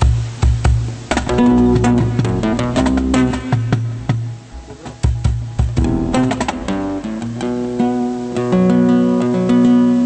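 Two flamenco guitars playing together: plucked notes and runs, with bursts of quick strummed chords.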